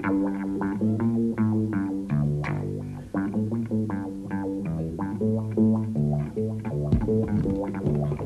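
Double bass solo: plucked (pizzicato) upright bass playing a run of separate notes, about four a second.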